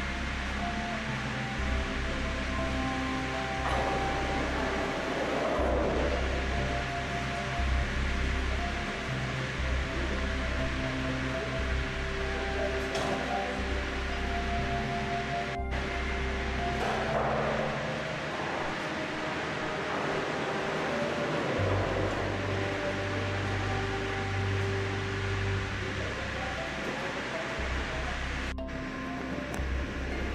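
Background music: slow, held chords that change every second or two, with no voice over them.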